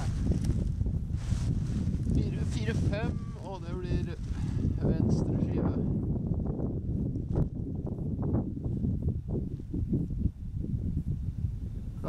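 Wind on the microphone, a steady low rumble, with a person's voice speaking briefly a few seconds in, followed by scattered light knocks.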